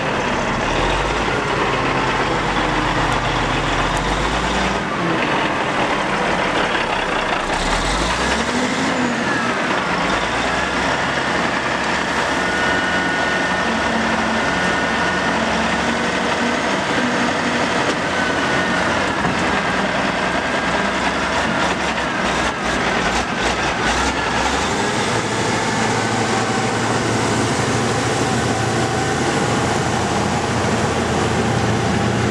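Wheel loader's diesel engine running under load as it works, its pitch rising and falling. A cluster of sharp knocks comes about three-quarters of the way in.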